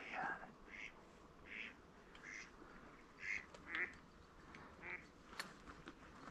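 Faint, scattered quacking and calling from a large flock of ducks on the water, mostly gadwall mixed with mallards, wigeon and teal, one short call every half second to a second.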